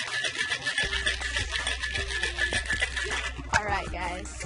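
Ice rattling hard inside a cocktail shaker as it is shaken for a cosmopolitan; the rapid rattle stops about three seconds in. Background music plays throughout.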